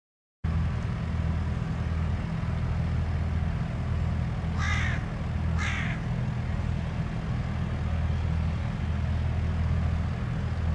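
Two short, harsh bird calls about a second apart, near the middle, over a steady low rumble.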